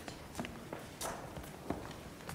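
Scattered footsteps and light knocks, irregular and a few a second, echoing slightly in a quiet church sanctuary.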